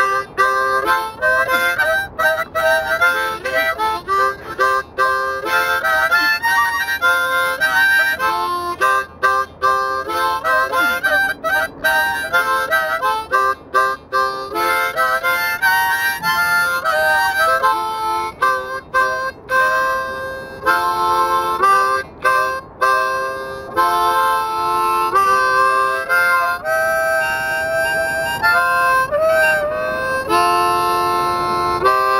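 Harmonica played solo in a slow blues style: held notes and chords in short phrases with brief breaks for breath, and a note bent upward near the end.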